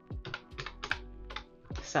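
Fingertip presses on the keys of a plastic desk calculator, about seven quick clicks in a row as a sum is keyed in, over quiet background music.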